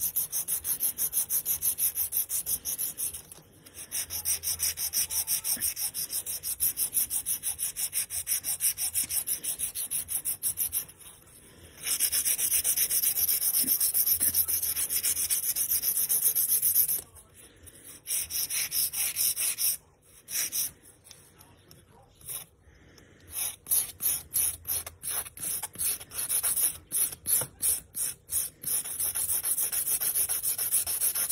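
Hard-gel nail extension being filed by hand with a nail file: a fast, even back-and-forth rasp with a few short pauses. Near the end the strokes come shorter and choppier.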